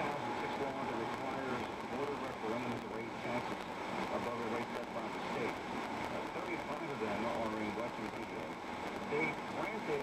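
Muffled AM radio talk playing through the car's speakers, heard inside the moving car over steady road noise.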